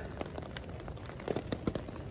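Light rain pattering on a tent, faint irregular ticks of drops over a soft hiss.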